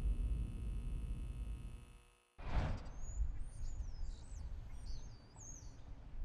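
Low steady hum of a large empty arena, cutting off about two seconds in. Then quieter outdoor ambience with a few birds chirping in short rising and falling calls.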